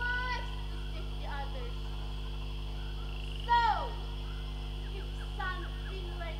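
Teenage girls' voices making short vocal sounds, with one loud cry about three and a half seconds in that falls steeply in pitch. A steady low hum runs underneath.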